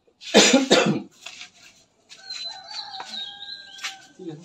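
A person coughs twice in quick succession, then a rooster crows in one long call through the second half.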